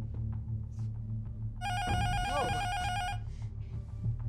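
Telephone ringing: a single ring about a second and a half long, a high tone with a fast warble, over a low droning music bed.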